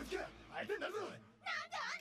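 A few short high-pitched, cat-like vocal cries with gliding pitch, separated by brief gaps.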